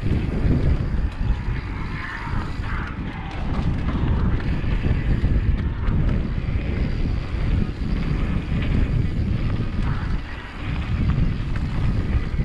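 Wind buffeting a GoPro action camera's microphone as a mountain bike rolls along a dirt singletrack, with rough tyre noise over the packed dirt and loose gravel.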